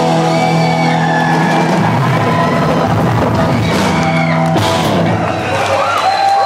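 Live punk rock band (electric guitars and drum kit) playing loud, holding long sustained chords as the song draws to its end, with a sharp hit about four and a half seconds in. The crowd starts to whoop near the end.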